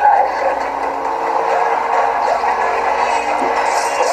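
Movie soundtrack from a car-chase scene: steady, sustained score music over continuous vehicle engine noise.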